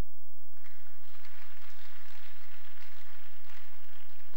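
Congregation applauding: dense, even clapping that starts about half a second in and carries on.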